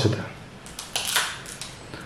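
A rubber eraser rubbing on a paper worksheet in a few short scratchy strokes about a second in, rubbing out a tracing line drawn from the wrong starting point.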